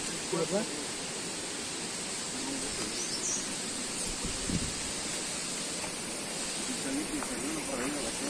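Steady outdoor background hiss, with a brief high chirp about three seconds in and a low thud a little later; faint talk is heard near the start and again near the end.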